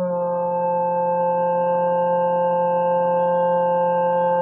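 Background music: one sustained chord of steady, smooth tones held throughout, with no beat or melody, like a synthesizer pad or organ.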